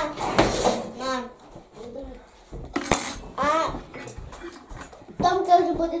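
Dishes and cutlery clinking and clattering as a meal is served and eaten, with children's voices in between.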